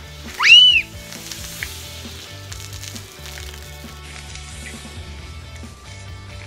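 Coke and Mentos geyser: cola fizzing out of the bottle with a steady hiss, over background music. A loud, high squeal rises and falls once about half a second in.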